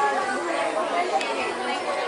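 Indistinct chatter of several voices overlapping in a busy shop, with no single speaker standing out.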